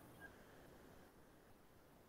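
Near silence: faint room tone in a pause between spoken sentences.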